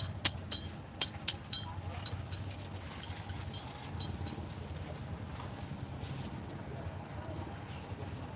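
A quick, irregular series of bright metallic clinks, each ringing briefly, dying away over the first few seconds. Under them runs a steady low rumble.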